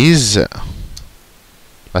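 A spoken word at the start, then a few soft computer keyboard keystrokes in the first second as text is typed.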